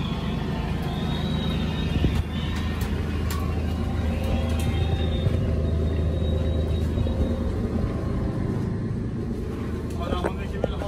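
A large engine idling steadily, a low even rumble, with background music faintly under it in the first part.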